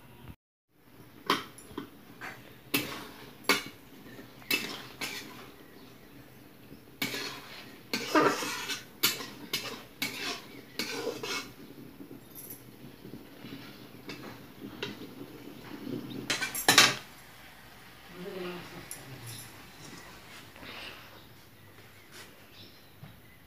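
Metal cookware clinking and scraping: a spoon knocking against a kadhai and the steel plate used as its lid, in a string of sharp clinks with a longer scrape about a third of the way in and the loudest clink about three-quarters of the way through.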